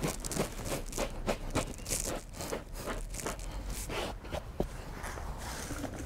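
Rubber pet hair brush scrubbing cloth seat upholstery in short, irregular strokes, two or three a second.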